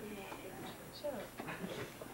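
Faint, indistinct voices murmuring in a classroom, with no clear words.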